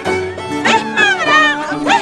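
Andean harp and violin playing a toril, a festive Peruvian Andean song, with a woman's high voice singing over them.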